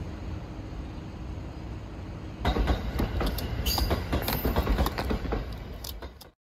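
A steady low rumble, then from about two and a half seconds in a louder passage of an electric train running on the tracks close by, its wheels clattering with sharp clicks and brief squeals.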